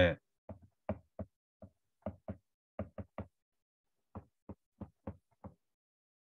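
Stylus tip tapping on an iPad's glass screen while handwriting: about fifteen short, irregular taps, with a brief pause about halfway through.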